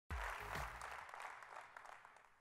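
Audience applauding. It starts suddenly and dies away steadily, mixed with a little music at the start.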